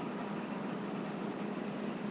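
Steady room background noise: an even hiss with a faint low hum, and no distinct event.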